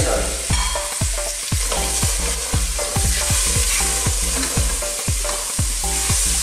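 Butter, chopped red onions and potato chunks sizzling steadily in a stainless steel pot, stirred and scraped with a wooden spoon.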